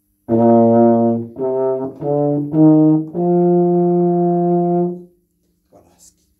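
A tuba playing five notes that step upward in pitch, the last held for about two seconds. The notes are changed with the lips while the same valve fingering is kept, without pressing the valves.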